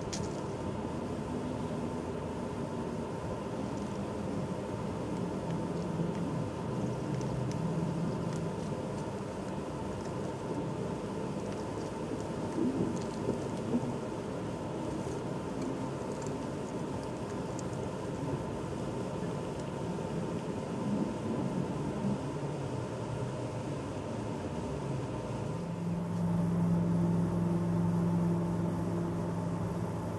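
Steady outdoor background noise with a low mechanical hum. A steadier, somewhat louder hum comes in about four seconds before the end.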